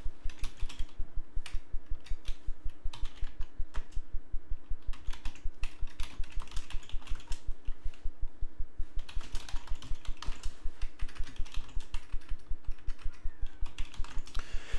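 Typing on a computer keyboard: a fast, continuous run of key clicks with brief lulls between words.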